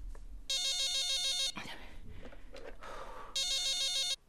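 Cordless phone ringing with an electronic warbling ring: two rings of about a second each, roughly three seconds apart.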